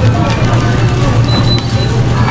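Supermarket ambience: background music and faint voices over a steady low hum.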